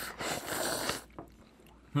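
A man noisily slurping a mouthful of vanilla ice cream off a spoon, a rush of sucked air lasting about a second.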